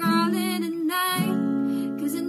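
A young woman singing while strumming a steel-string acoustic guitar. About a second in, the gliding melody gives way to steady held notes.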